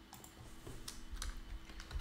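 Faint typing on a computer keyboard: a scattered run of separate key clicks.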